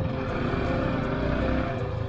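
Yamaha R15's single-cylinder engine running at low road speed, with a steady low rumble from wind on the helmet-mounted microphone that swells in the middle of the stretch.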